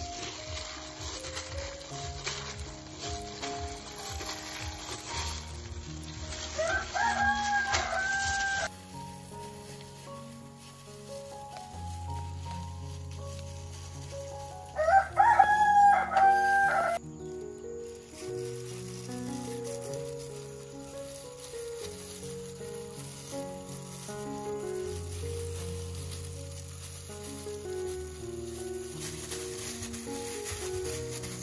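A rooster crowing twice, about seven and fifteen seconds in, each crow rising and then held, over background music with slow, steady held notes.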